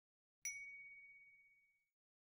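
A single clear chime sound effect, one ding struck about half a second in that rings out and fades over about a second and a half, marking the approved 'Good image' example appearing with its green check.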